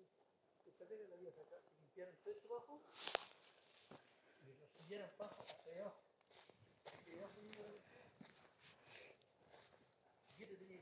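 Faint speech, a person talking quietly, with a sharp click about three seconds in.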